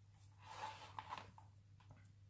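Near silence with faint rustling and a few light ticks from fingers handling the stripped Cat6 cable's twisted-pair wires, over a low steady hum.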